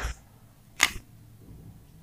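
Two sharp clicks less than a second apart, the second the louder, from a whiteboard marker being handled and set against the board while writing.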